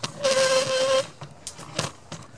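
Steel ball-bearing drawer slide being run along its rail: a metallic rolling whir with a steady ringing tone for just under a second, followed by a few light clicks.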